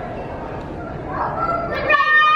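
A young child's high-pitched, drawn-out squeal starts about a second in and is held toward the end, over a low rumble of camera-handling noise as the camera is carried.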